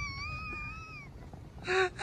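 A single high, drawn-out, gently wavering cry that fades out about a second in, followed by a brief snatch of speech near the end.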